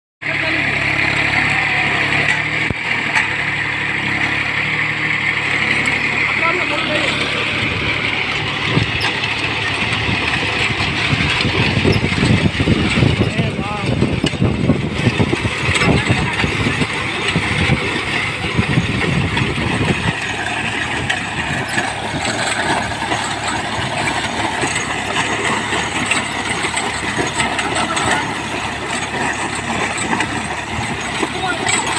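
27 hp VST Shakti MT 270 compact tractor's diesel engine running steadily under load as it pulls a disc plough through dry soil, with an uneven low rumble that is stronger through the middle stretch.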